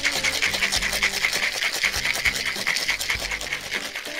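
Ice rattling hard inside a cocktail shaker, a metal shaker tin sealed over a mixing glass with ice and watermelon margarita mix, shaken in a fast, even rhythm of several strokes a second.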